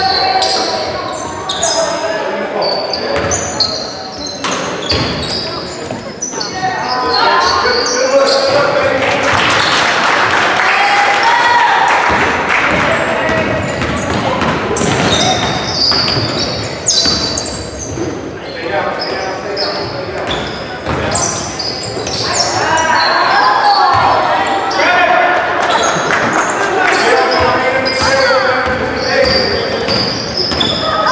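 Basketball game in a gym: a ball dribbling on the hardwood floor, sneakers squeaking, and spectators and players shouting, all echoing in the large hall. The shouting swells about eight seconds in and again past twenty seconds.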